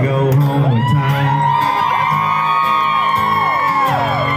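Live country music from a small acoustic band: acoustic guitars, with long held high notes and sliding pitches over a steady low line.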